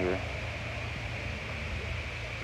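A steady low hum with a faint even hiss, just after a spoken word ends.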